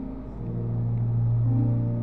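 Sustained low chord from a softly played keyboard, with a deep bass note that swells in about half a second in and holds.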